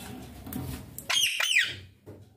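Indian ringneck parakeet giving two short, shrill calls in quick succession about halfway through, each falling in pitch at the end.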